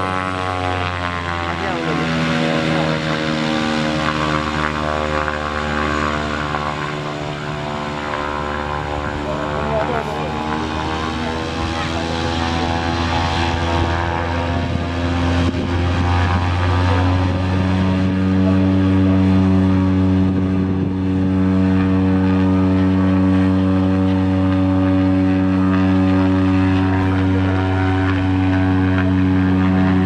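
Single-engine turboprop plane, a Cessna Caravan, taxiing with its propeller turning. It makes a continuous drone of several tones that slide in pitch over the first half, then settle steadier and a little louder from a bit past halfway.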